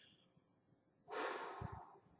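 A woman's short, breathy exhale blown out through pursed lips about a second in, with a low thump near its end; near silence before it.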